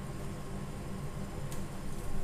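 Steady low hum of kitchen background noise, with one faint click about one and a half seconds in.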